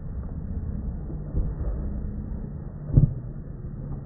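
Slowed-down, muffled outdoor sound: a steady low rumble with one loud thump about three seconds in.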